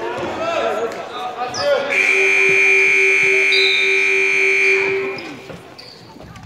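Gym game horn (scoreboard buzzer) sounding one loud, steady blast of about three seconds, starting about two seconds in, over crowd voices.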